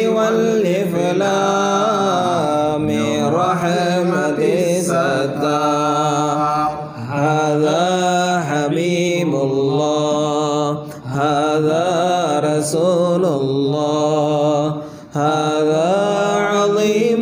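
Unaccompanied chanting of an Arabic devotional ode in long, ornamented melodic phrases, with short breaks for breath at about seven, eleven and fifteen seconds.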